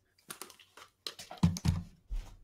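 A string of irregular clicks and knocks, with two heavier thumps about one and a half seconds in: handling noise as equipment is fiddled with.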